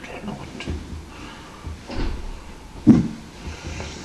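A few dull knocks and bumps close to the microphone, the loudest about three seconds in, over a low rumble.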